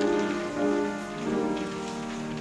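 Grand piano playing slow, sustained chords, the introduction to a song.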